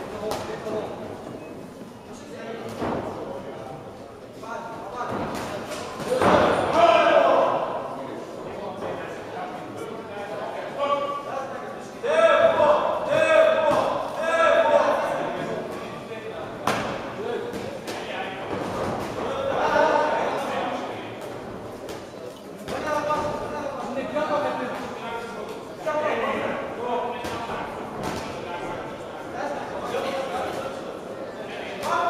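Shouting voices echoing in a large sports hall during an amateur boxing bout, loudest in several spells, with scattered sharp thuds of gloved punches landing.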